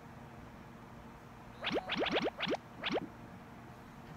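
A quick run of about six rising, boing-like electronic sweeps, a sound effect, starting a little under two seconds in and lasting about a second and a half.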